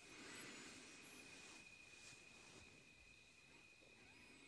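Near silence: room tone, with a faint, steady, high-pitched tone.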